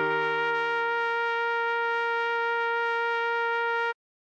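Electronic trumpet voice holding one long, steady note over a held low accompaniment tone; both cut off together just before the end.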